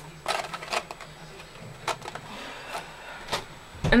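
Paper craft pieces being handled on a tabletop: a few light, irregular taps and clicks with a soft rustle in between.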